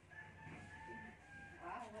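A rooster crowing faintly: one long held call that breaks off and falls away about a second and a half in.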